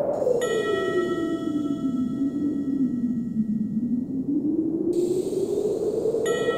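Howling wind whose pitch slowly sinks and then rises again, under a bell-like chime. The chime is struck once about half a second in and rings on for several seconds.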